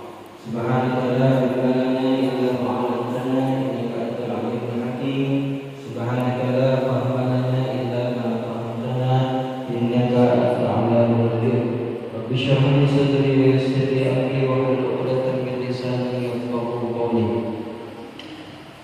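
A man chanting Quranic recitation in Arabic through a microphone, in long melodic phrases with short breaths between them.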